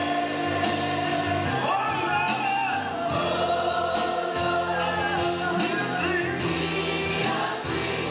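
Church praise team of several singers singing a gospel song together into microphones, backed by instruments, in long sustained notes.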